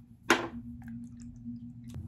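A short sharp plastic click about a third of a second in as a small plastic bottle is handled at its top, then a few faint handling taps over a steady low hum.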